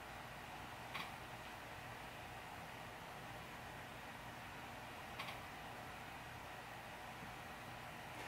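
Quiet room tone, a steady hiss, with two faint short clicks, one about a second in and one about five seconds in.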